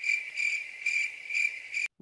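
Cricket-chirping sound effect: a steady high trill pulsing about twice a second, the stock comic cue for an awkward silence. It stops suddenly near the end.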